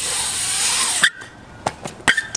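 BMX bike tyres rolling over a concrete skatepark bowl, a loud hiss that cuts off sharply about a second in, followed by a few light clicks and knocks from the bike.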